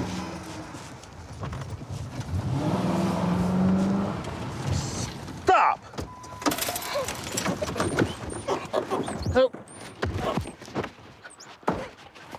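Police patrol car's engine running steadily as the car moves up beside the cyclist, then a short shout about five and a half seconds in, followed by a run of clicks, knocks and rattles as the car door is opened and the officer climbs out.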